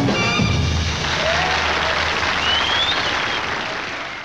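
A traditional jazz band of trumpet, trombone, clarinet, piano, bass and drums ends the tune on a final chord, and applause from the audience takes over about a second in.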